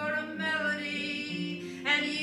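A woman singing a wordless melody over her strummed steel-string acoustic guitar.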